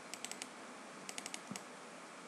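Computer keyboard keys being tapped in two quick runs of about four clicks each, about a second apart, then one more click, over a faint steady hiss.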